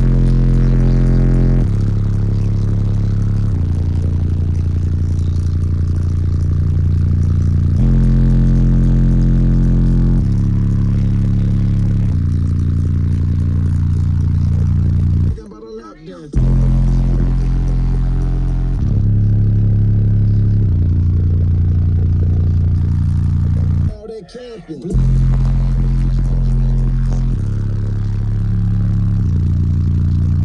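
Bass-heavy music played very loud through three 18-inch Resilient Sounds Platinum subwoofers walled into a small car, heard inside the cabin. Deep bass notes shift every couple of seconds, and the music cuts out briefly twice, about halfway through and again near the three-quarter mark.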